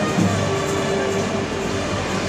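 Music, with the steady low rumble of a Zamboni ice resurfacer running underneath it.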